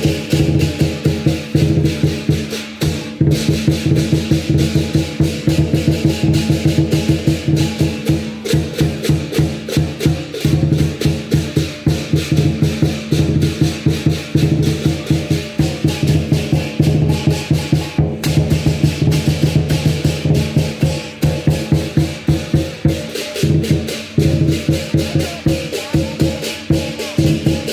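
Lion dance percussion band playing: a large lion drum beaten in rapid, continuous strikes with clashing cymbals and a ringing gong, accompanying a high-pole lion dance.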